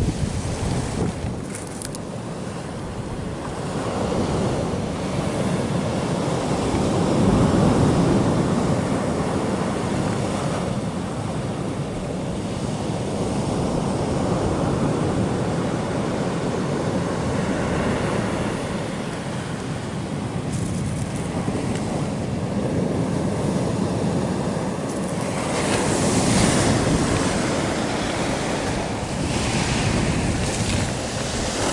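Ocean surf breaking and washing up a fine-gravel beach in slow surges, loudest about eight seconds in and again near the end.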